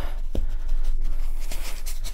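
Paintbrush dabbing and scrubbing acrylic paint onto a stretched canvas in a run of short scratchy strokes, with one sharper tap about a third of a second in. The brush is working off the last of its paint.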